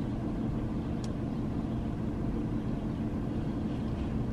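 Car idling while parked, a steady low hum heard inside the cabin, with a faint click about a second in.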